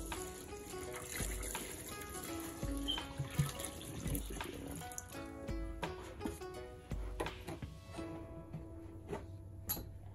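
Chocolate milk pouring from a plastic gallon jug into a metal tub, a steady liquid stream that fades out near the end. Under it, quiet background music with a slow beat about every second and a half.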